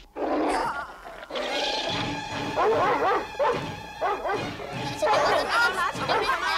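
Cartoon guard dog barking and growling over and over, starting about a second in.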